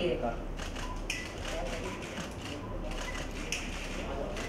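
Scattered short, sharp clicks over a faint murmur of voices in a room.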